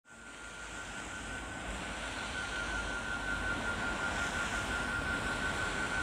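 Steady rushing noise with one high held tone, swelling gradually in from silence as the ambient intro of a song.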